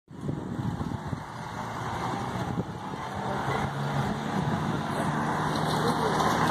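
A motor vehicle's engine running with a steady low hum, over general street noise.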